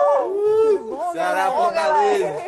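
Several voices whooping and hollering together in long howl-like calls that glide up and down in pitch.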